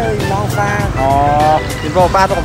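A voice singing or chanting a repeated 'heh' melody, with one long held note about a second in, over the low steady running of motorbike engines.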